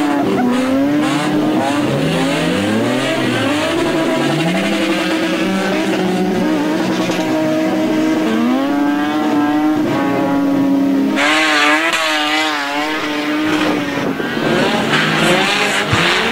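Several rear-wheel-drive dirt rod stock cars racing on a muddy dirt oval. Their engines overlap, each rising and falling in pitch as the drivers rev through the turns, and the sound is loud throughout.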